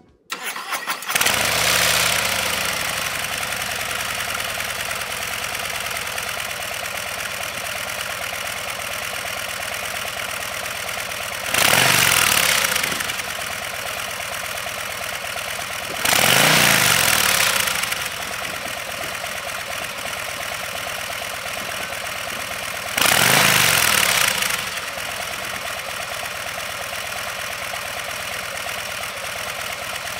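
Harley-Davidson Breakout 117's 1,923 cc Milwaukee-Eight 117 V-twin, heard through its twin mufflers, starting up and settling into a steady idle. It is then revved briefly three times, about halfway in, a few seconds later and again near the end, each rev rising and falling back to idle.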